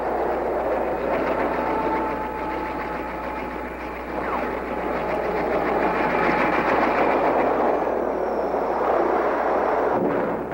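Steady engine noise with a rattling texture, growing louder a little before the middle and with a faint tone that falls briefly.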